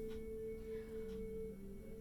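Soft background music of sustained, held tones, with the lower note stepping down about a second in.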